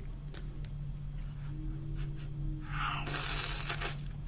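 Close-up eating sounds: a mouthful of meatball and leafy greens taken off a spoon and chewed. There are faint clicks, then a louder noisy burst lasting nearly a second about three seconds in, over a steady low hum.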